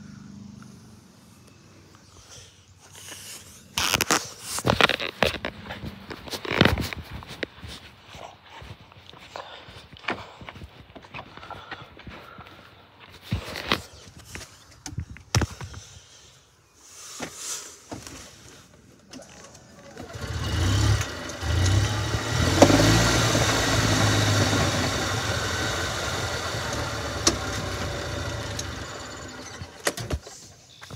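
Golf cart being driven: a steady running noise with a low hum and rushing air that sets in about two-thirds of the way through. Before that, scattered knocks and bumps as things are handled in the cart.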